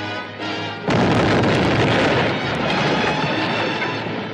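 A sudden loud blast-like crash about a second in, followed by a dense rumbling noise that eases off over about three seconds. It is a film sound effect laid over an orchestral score.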